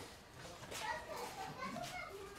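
Faint, high-pitched vocalising of a young child, in short bursts over quiet background voices.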